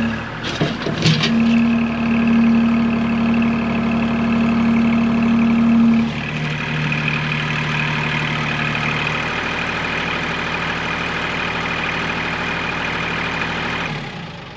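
Kubota L2502 tractor's three-cylinder diesel running under load as the front loader raises the bucket to pull a stuck T-post on a chain. Its steady note steps down in pitch about six seconds in. A few metallic clicks come about a second in.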